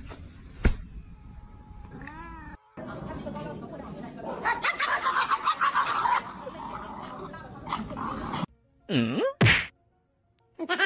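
A single sharp slap less than a second in. Then several seconds of music, ending near the end with two short swooping sound effects that dip low and rise again.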